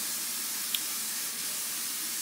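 Steady background hiss, with one faint short click about three-quarters of a second in.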